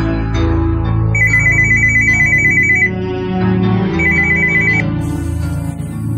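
Corded desk telephone ringing twice with a rapid electronic trill over steady background music. The first ring starts about a second in and lasts under two seconds; the second, shorter ring comes near four seconds.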